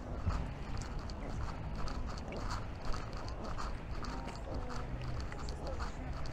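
Footsteps walking steadily along a park path, about two steps a second, over a steady low background rumble.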